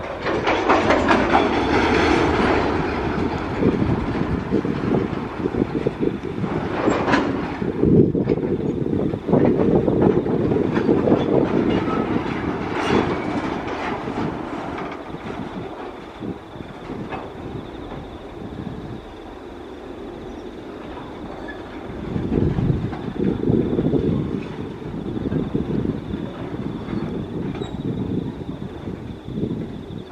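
Freight train wagons rolling past on the track: a continuous rumble of steel wheels with repeated clicks over rail joints. Hopper wagons are followed by empty flat wagons. The sound is loudest in the first part, eases off in the middle, then picks up again.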